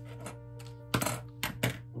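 About four sharp light metallic clicks and clinks in quick succession, starting about a second in, as small metal craft tools are handled: scissors set down on a cutting mat and a small metal pendant frame picked up. Steady background music runs underneath.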